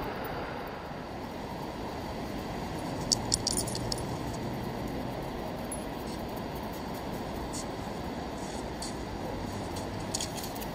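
Steady rushing of surf breaking on a sandy beach, mixed with wind on the microphone, with a few short faint clicks about three to four seconds in.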